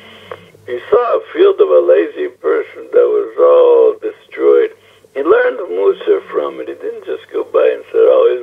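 Speech only: a man talking continuously, with a thin, narrow sound like a phone or radio recording.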